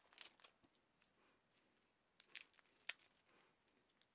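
Faint crinkling and crackling of thin protective plastic film being peeled off a watch's case and metal bracelet, in a few short bursts near the start and again around two to three seconds in.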